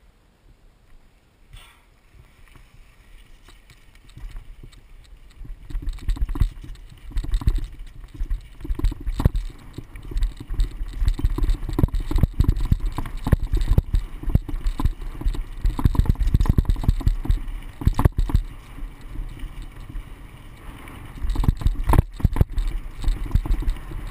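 Mountain bike rolling down a rough dirt trail: tyre noise, bike rattle and sharp jolts from bumps, with wind rumbling on the camera microphone. It starts nearly silent and builds over the first few seconds as the bike picks up speed.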